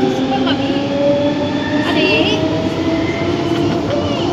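Siemens/Matra VAL 208 PG rubber-tyred automated metro train running through a tunnel, heard from inside at the front. Its motor whine rises slowly in pitch over a steady rolling noise.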